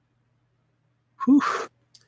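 Near silence, then about a second in a man lets out one short, breathy "whew".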